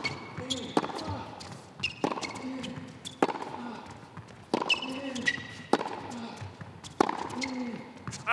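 Tennis ball struck back and forth in a baseline rally, a crisp racquet hit about every 1.2 seconds, with short grunts from the players on some strokes and brief high squeaks from court shoes.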